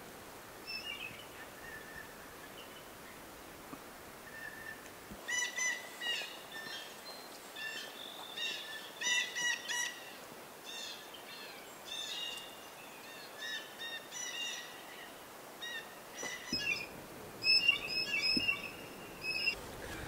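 Small songbirds chirping, a run of short, high, repeated calls and brief trills over a faint steady outdoor hush.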